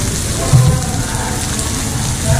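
Pork belly sizzling on a tabletop grill pan, a steady crackling hiss, with music underneath and a low thump about half a second in.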